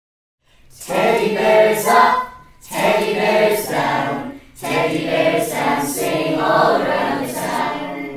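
A group of voices singing an intro tune in three phrases, with brief pauses between them.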